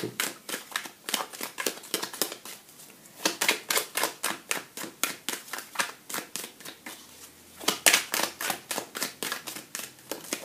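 A deck of tarot cards being shuffled by hand: a rapid, uneven patter of soft card slaps and flicks, louder in two spells.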